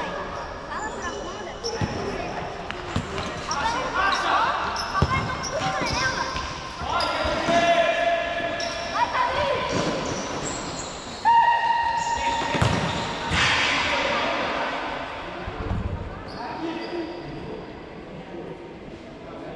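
Futsal ball being kicked and bouncing on an indoor court, a few sharp thuds echoing in a large hall, with players shouting and calling out over the play, including two long held shouts in the middle.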